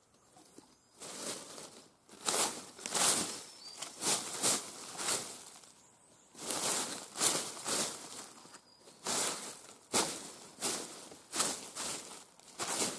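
Footsteps crunching through dry leaf litter, an uneven walking rhythm of about one to two steps a second, with a couple of brief pauses.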